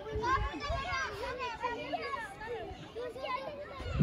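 Several young children talking and calling out over one another while they play.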